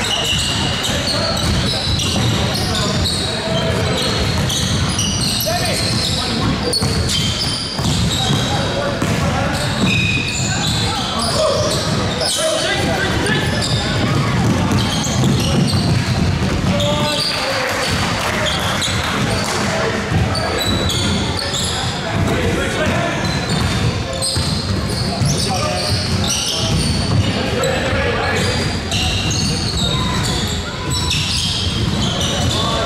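Basketball game on a hardwood court: the ball bouncing, sneakers squeaking, and players' voices calling, echoing in a large hall.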